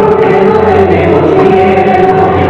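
Choir singing slow, sustained chords, several voices holding long notes together.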